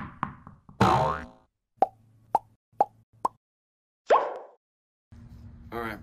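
Cartoon sound effects: a couple of sharp hits at the start, a springy boing-like glide about a second in, then four short pops about half a second apart and a final swoop.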